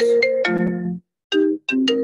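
A phone ringtone playing a melodic tune of quick chime-like notes. It stops about a second in, then starts the tune again in short phrases.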